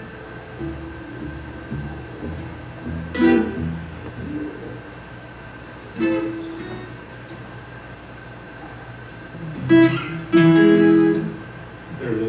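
Twelve-string acoustic guitar strummed in single E chords, each left to ring and die away: one about three seconds in, one about six seconds in, and two close together near the end.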